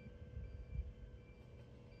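Faint background music, with short high notes recurring every half second or so over a low hum.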